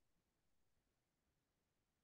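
Near silence: a pause between speakers in a video-call recording.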